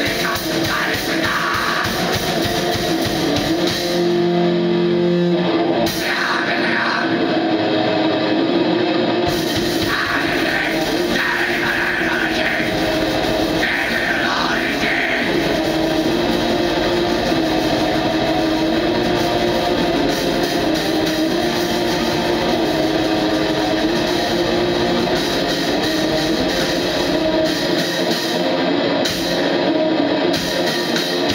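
Black metal duo playing live: loud, distorted electric guitar over a drum kit, continuous and dense, with harsh vocals shouted in at intervals in the first half.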